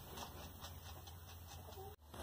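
Quiet background with a faint hiss and a few faint ticks; no distinct sound stands out.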